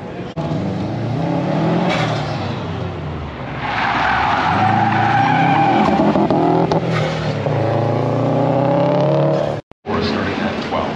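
Autocross car driven hard through a cone course, its engine revving up and down between gears and corners, with loud tire squeal from about four seconds in as it slides through a turn. The sound cuts out abruptly just before the end.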